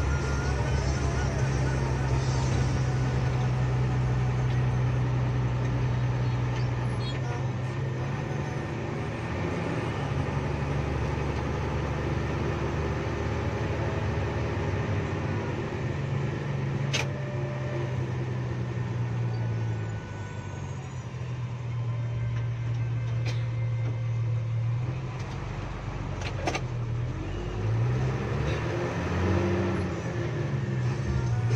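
Diesel bus engine heard from inside the cabin while driving, its note rising and falling as speed changes, with a drop in revs about two-thirds through and revs rising again near the end. A couple of sharp clicks stand out over it.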